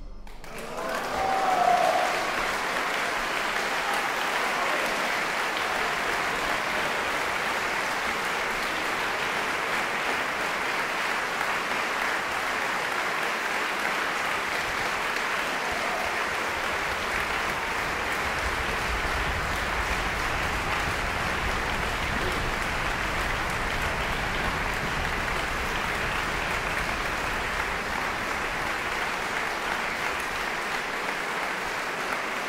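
Concert audience applauding: the clapping breaks out at once, swells over the first two seconds, then holds steady.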